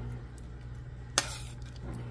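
A serving spoon clinks once against a ceramic bowl about a second in, as shredded pork in sauce is spooned onto rice, over a steady low hum.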